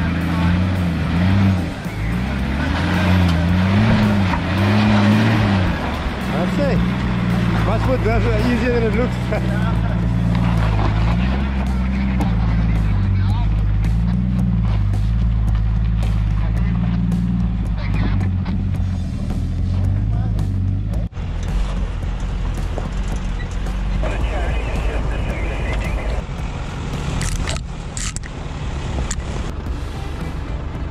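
Off-road 4x4 engine labouring up a steep rocky climb, its revs rising and falling repeatedly as the driver works the throttle. About two-thirds of the way through the sound changes abruptly to a steadier engine note with a few sharp crunches of tyres on rock.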